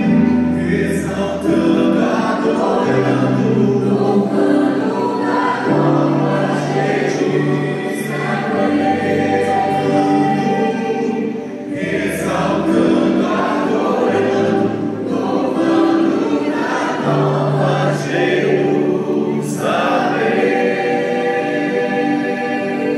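Church worship team and choir singing a gospel hymn together in harmony, accompanied by a band with sustained bass notes that change every few seconds.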